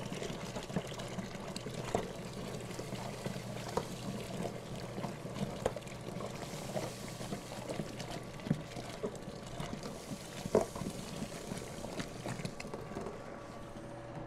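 Two-row malted barley poured steadily from a plastic bucket into a cooler mash tun of hot water and stirred in with a spoon: an even rushing hiss of grain with small scattered clicks and knocks. A low steady hum runs underneath.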